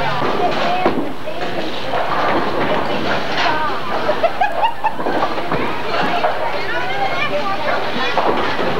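Indistinct chatter of several people talking over one another, a steady background babble.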